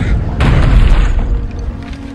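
A loud cinematic boom with a crash about half a second in, over a deep rumble that dies away, mixed with the orchestral film score.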